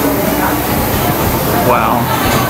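People talking over a steady, noisy background, with one voice saying "wow" near the end.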